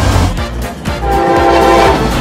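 A locomotive air horn sounds one held chord through the second half, over background music.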